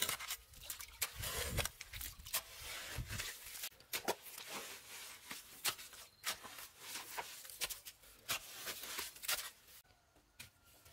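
A narrow spade digging into wet, gravelly mud: repeated irregular scrapes and crunches as the blade cuts and grinds through grit and stones, with a few heavier thuds in the first few seconds.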